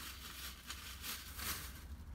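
Faint rustling of hands handling purchased items, going on and off without a steady rhythm.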